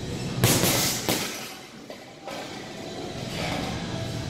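Two heavy hits on a heavy punching bag by boxing gloves, a little under a second apart, within the first second or so. Music plays underneath.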